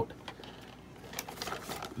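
Faint handling noise of a cardboard toy box with a plastic window being held and shifted in the hand, with a few light clicks and taps about a second and a half in.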